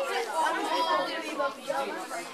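Indistinct background chatter of several voices talking at once.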